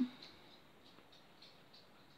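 Faint, soft rustling and small ticks of fingers handling a crocheted yarn toy and its yarn tails.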